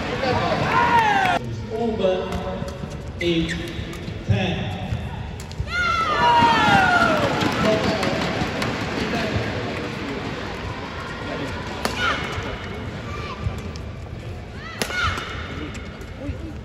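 Doubles badminton rally: sharp racket hits on the shuttlecock and squeaks of shoes on the court, over a murmur of crowd voices and calls that swell and fade.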